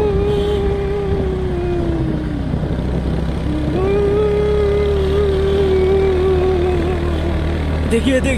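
Two long, wavering ghost-like wails in a voice-like note, the first sagging away after about two and a half seconds and the second starting about a second later and held to the end, over the steady low hum of a car engine.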